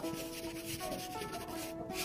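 A Chinese ink brush rubbing and scraping across paper as it lays down rock strokes, with soft background music of held notes underneath.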